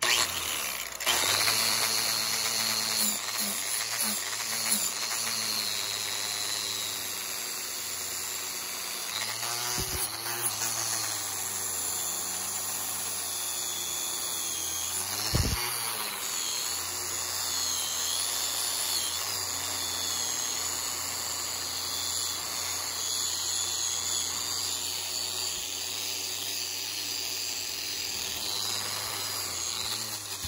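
Angle grinder running with a wire cup brush, the wire bristles scrubbing forge scale off a hand-forged steel spoon. The motor's pitch wavers as the brush bears on the metal, with a single knock about halfway through.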